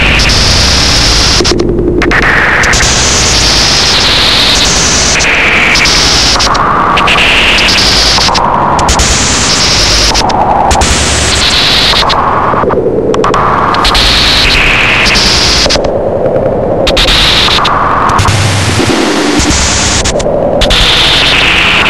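Harsh analogue noise music: a loud, continuous wall of noise, with bright filtered patches hopping between high and low pitches about once a second. A few times the top end cuts out briefly.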